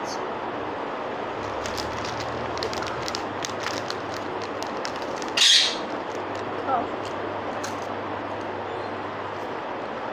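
A pet parrot gives one short, harsh squawk about halfway through, the loudest sound here, over a steady background hiss. Before it come faint, scattered clicks.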